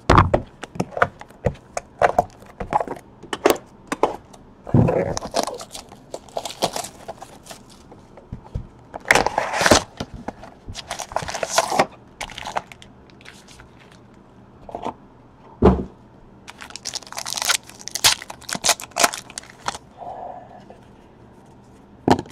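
A cardboard trading-card hobby box and its foil packs being handled and opened: a run of sharp clicks, knocks and crackles of cardboard and wrapper, with several ripping sounds of about a second each as packs are torn open.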